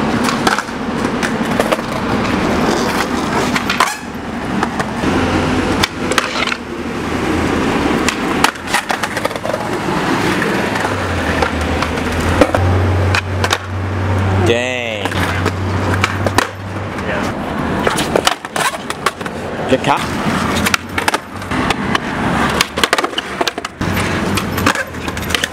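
Skateboard wheels rolling on a concrete sidewalk, with repeated sharp pops and clacks of the board as flatground tricks are tried and landed. A low hum runs for several seconds in the middle.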